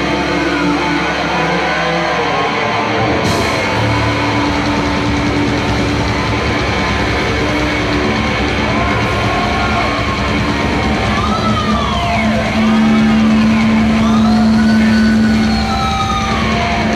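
Heavy metal band playing live: distorted electric guitars, bass and drums. Near the end, high notes sweep up and down in pitch and the sound grows louder.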